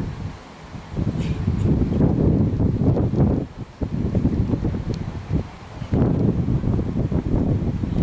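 Wind buffeting the camcorder's microphone in gusts: a low rumble that rises and falls, with a brief lull a little before the middle.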